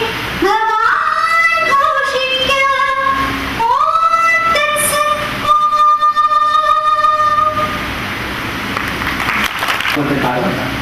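High voices singing, with gliding and held notes, ending on a long sustained note about seven and a half seconds in. An even noisy wash follows to the end.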